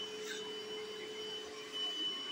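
Bissell SpotClean portable carpet cleaner's motor running steadily, a constant whine over a soft hiss.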